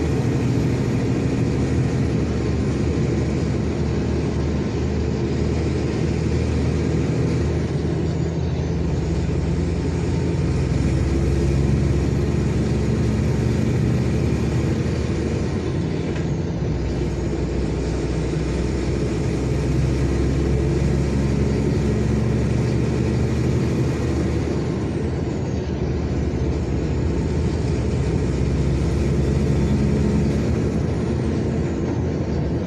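Steady engine drone and road noise heard from inside the cab of a truck cruising along the highway.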